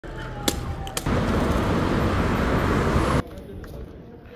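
Rushing wind and road noise on the microphone of a moving electric scooter, loud from about a second in and cutting off suddenly after about three seconds. Before it, a faint steady whine and two sharp clicks.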